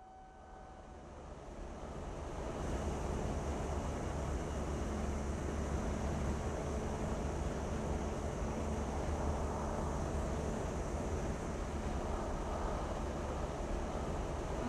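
Road noise heard from inside a moving vehicle: a steady low rumble with a hiss over it, fading in over the first two or three seconds and then holding even.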